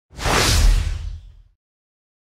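Intro sound effect: a whoosh with a deep low boom under it, swelling up at once and fading out by about a second and a half in.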